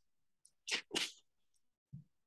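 Two short, sharp bursts of breath from a person, about a third of a second apart, like a sneeze, picked up through a video-call microphone.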